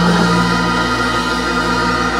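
Live church instrumental music: a chord held steady on sustained notes, with one low note dropping out about a second in.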